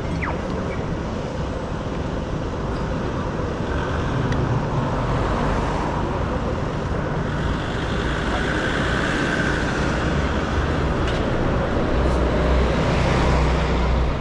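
City street traffic at an intersection: cars driving past with steady tyre and engine noise, one passing close around the middle, and a deeper rumble building near the end.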